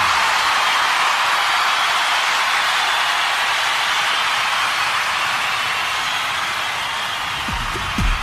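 A steady, hiss-like wash of noise with no low end, slowly fading, used as a transition in the track. Drums come back in near the end.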